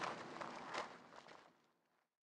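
Footsteps, fading out and gone shortly before the end.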